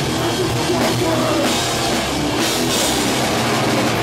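Live rock band playing loudly: electric guitar over a full drum kit with steady cymbals.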